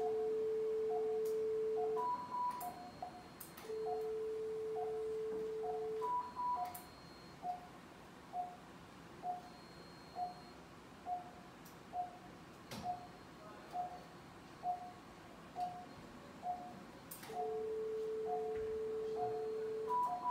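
Operating-theatre equipment sounds. A patient monitor's pulse oximeter beeps steadily, a little under once a second. Three times, a LigaSure vessel-sealing generator sounds a long steady tone for about two seconds as the Maryland jaw seals tissue, and each seal ends with a short higher tone marking it complete.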